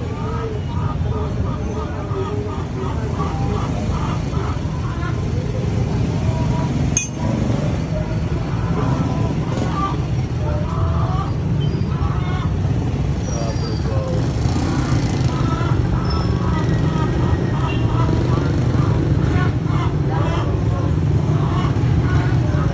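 Indistinct background voices over a steady low vehicle rumble, with one sharp click about seven seconds in.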